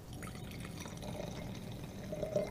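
Red wine pouring from a bottle into a stemmed wine glass, a faint steady trickle of liquid filling the glass.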